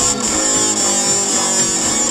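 Hard rock music: an instrumental passage led by guitar, with its notes stepping from one pitch to the next.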